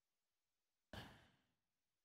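Near silence, broken about a second in by one brief, faint breath from the newsreader between two passages of speech.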